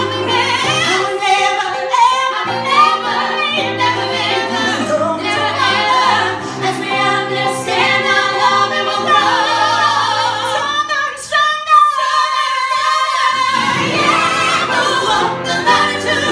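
Three women singing in harmony, live, to piano accompaniment. A little past the middle the low accompaniment drops out for about three seconds, leaving the voices nearly alone, then comes back in.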